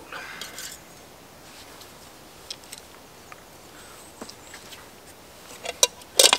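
Scattered light clicks and knocks of camp cooking gear being handled and set down, with a few sharper clicks near the end.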